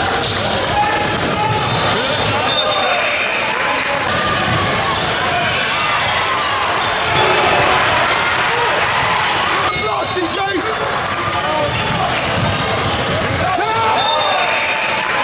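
Basketball dribbling on a hardwood gym court during live play, with indistinct voices of players and spectators throughout.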